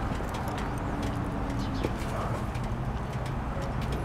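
The V-twin of a 2011 Harley-Davidson Dyna Super Glide Custom idling steadily through Vance & Hines Short Shots exhaust.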